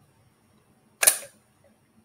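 A single short click about a second in, with a brief tail, against near silence.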